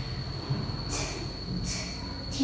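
A voice making two short, quiet, hissing 'ch' sounds a little under a second apart, practising the sound, over a faint steady high-pitched whine.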